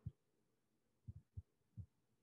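Near silence with a few faint, short low thumps, one at the start and several close together in the second half.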